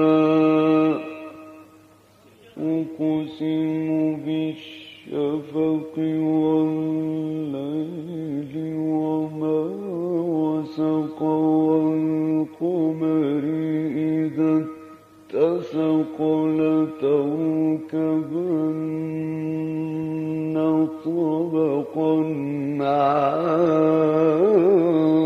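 A male Quran reciter chanting in the melodic mujawwad style. He holds long notes with ornamented turns in pitch, broken by short breath pauses about two seconds in and again about fifteen seconds in.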